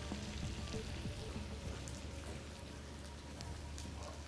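Diced Granny Smith apples sizzling faintly and steadily as they sauté in melted butter in a frying pan.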